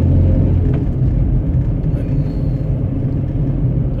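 Steady low engine and road rumble inside a van's cab while driving, a little heavier in the first second.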